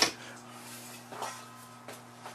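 Quiet room tone with a steady low hum, and a few faint, soft handling sounds, one about a second in and another near the end.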